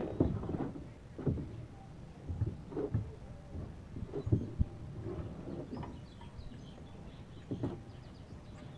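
Irregular knocks and bumps of a plastic paddle boat and gear being handled against a wooden dock, the loudest two close together a little past the middle.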